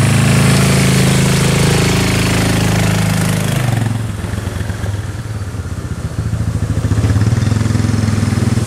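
Four-wheeler (ATV) engine running as the quad pulls away, loud for the first three to four seconds, then dropping off as it moves out of sight. It grows louder again near the end.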